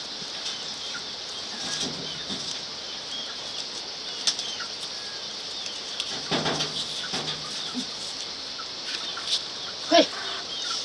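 Dry maize husks rustling and tearing as corn cobs are husked by hand, with scattered short crackles. A steady high-pitched chirping runs behind.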